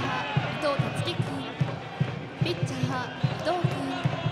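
Cheering section in the stands: a drum beating steadily about three times a second under a crowd of chanting voices.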